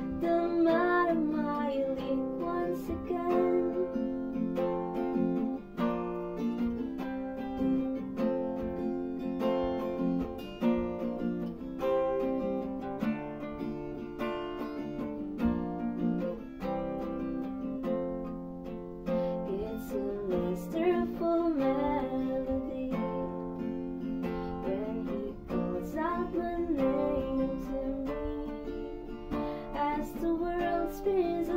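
Steel-string acoustic guitar played as a steady accompaniment, a passage with no sung lyrics.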